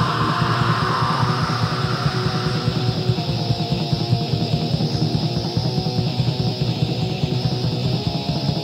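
Lo-fi raw black metal demo recording: distorted electric guitars over fast, even drumming. A harsher, brighter layer sits on top for the first three seconds or so, then fades.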